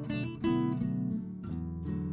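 Background music: strummed acoustic guitar with held chords.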